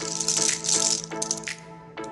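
Background music with a steady held chord, over a dense rattle of in-shell pistachios clattering as a hand scoops them in a bowl, thinning to a few sharp clicks after the first second.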